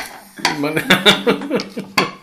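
A fork clinking against a plate, one sharp clink at the start and another at the end, with a voice talking in between.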